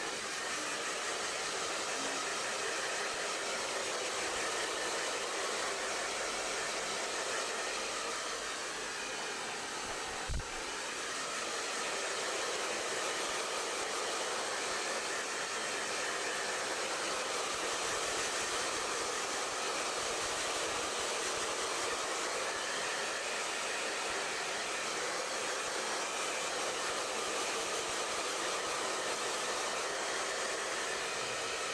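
Handheld hair dryer blowing steadily while drying hair, with one brief knock about ten seconds in.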